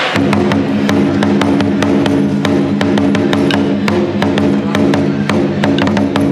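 Large Chinese barrel drum with a tacked hide head, beaten with two wooden sticks in rapid, steady strokes that start right at the beginning, its deep tone ringing on beneath the strikes.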